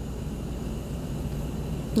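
Blueberry jam boiling hard in a stainless steel saucepan over a gas burner, heard as a steady, even, low noise.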